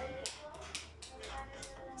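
Quiz video's sound track playing through a TV speaker: a quick, even run of light ticking clicks over faint music as the correct answer is revealed.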